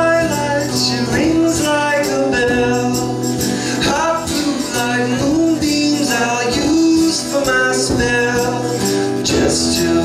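Live acoustic band music: a twelve-string acoustic guitar strummed along with a mandolin and hand-drum percussion, playing steadily without a break.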